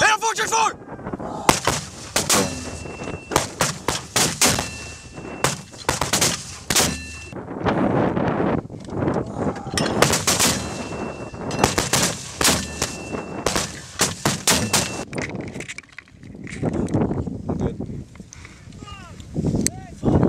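M252 81mm mortars firing: many sharp reports in quick succession, in two runs with a quieter stretch between them.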